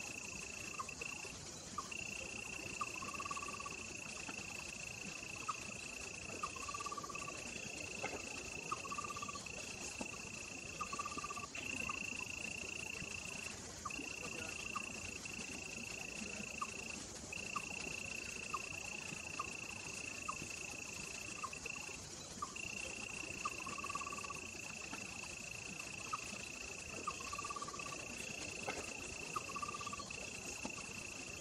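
Outdoor insect chorus: a steady high-pitched drone broken by brief gaps every couple of seconds, with short lower calls repeating every second or two and faint ticks.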